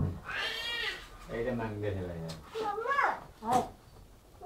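A toddler's high-pitched wordless vocal sounds, wavering and gliding up in pitch, mixed with a lower adult voice speaking in the middle.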